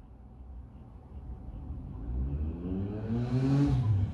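A motor vehicle's engine accelerating: a low rumble that grows louder from about a second in, its pitch rising over the last two seconds.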